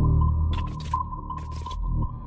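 Suspenseful film background music: a deep bass swell under a held high tone with repeating pings, and two short noisy swishes in the middle.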